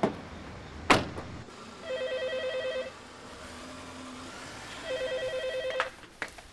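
A car door is shut with a single loud thump about a second in. Then a desk telephone rings twice, each ring a trilling, rapidly pulsing tone about a second long, with a two-second pause between them.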